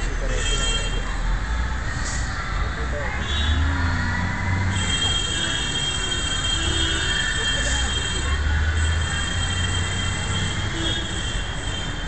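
Indistinct voices over a steady low rumble, with a thin, steady high-pitched tone that comes in about five seconds in.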